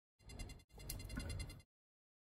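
Faint room noise that cuts in and out, with one small click about two-thirds of a second in.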